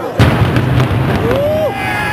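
Explosive demolition charges on a bridge going off: a sudden loud blast a fraction of a second in, then a rumbling run of further reports. Crowd whooping follows within the second.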